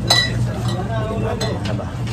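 A sharp clink with a short ringing tone just at the start, then a lighter click about a second and a half in, like glass bottles knocked on a shop shelf. Under it a steady low hum runs throughout.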